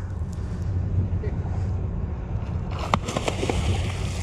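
Steady low hum with a short run of clicks and rattles about three seconds in.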